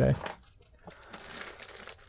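Clear plastic zip bags crinkling quietly and irregularly as they are handled.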